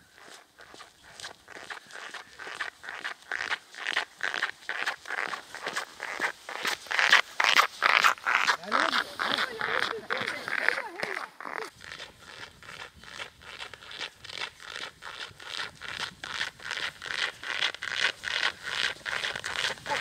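Footsteps crunching on packed snow at a steady brisk pace of about two steps a second, growing louder over the first several seconds. A few short pitched calls rise and fall about halfway through.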